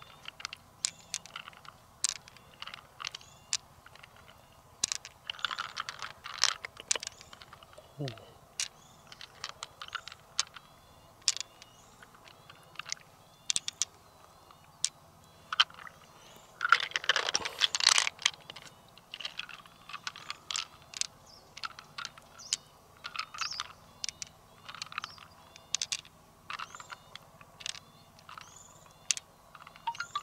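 Pearls clicking against one another as they are picked one by one from an opened freshwater mussel and dropped onto a handful of pearls: sharp, irregular clicks, with louder clattering bursts around six and seventeen seconds in.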